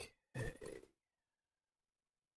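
A brief noise from the narrator's microphone: a faint click, then about a third of a second later a short breathy grunt or exhale lasting about half a second.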